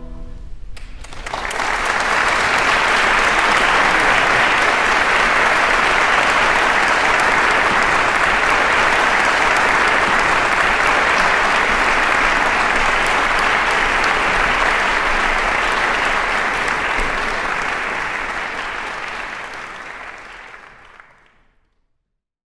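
Concert-hall audience applauding at the end of a song. The clapping is a dense, steady wash that starts about a second in and fades away near the end.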